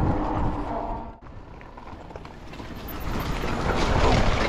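Wind on the microphone and tyre rumble from a Himiway Zebra fat-tire e-bike riding along a road. The sound cuts off abruptly a little over a second in, comes back quieter and builds up again as the bike rolls through grass.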